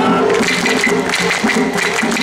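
Mikoshi festival sound: sharp wooden clacks from hyoshigi clappers struck several times, over a held high whistle note and a steady rhythmic low pulse of festival music.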